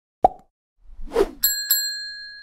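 Animated-logo sound effects: a short pop, then a whoosh, then a bright bell-like ding struck twice that rings on as one high tone, slowly fading.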